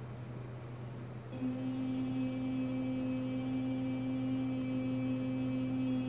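A woman's voice holding one long, steady sung note (healing toning), starting about a second in. A low steady hum runs underneath.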